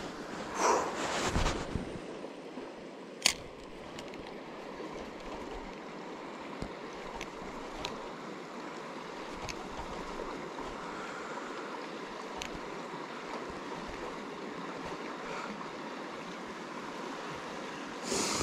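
Shallow river water running over rocks, a steady rush. A sharp click stands out about three seconds in.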